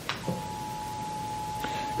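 A steady single-pitched tone, broken briefly by a short click just after the start.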